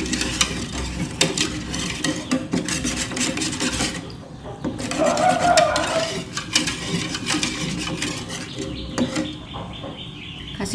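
Wire whisk stirring a thick green cornstarch-and-coconut-milk mixture in an aluminium pot, with rapid clicking and scraping of the wires against the metal. The stirring thins briefly about four seconds in, and a short higher-pitched sound comes about five seconds in.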